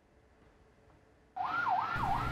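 Near silence for about the first second, then an ambulance siren cuts in suddenly. Its pitch sweeps quickly up and down, about three times a second.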